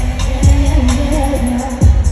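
Live R&B song played loud over an arena sound system, with a sung vocal line held over deep booming kick-drum hits, two of them about a second and a half apart.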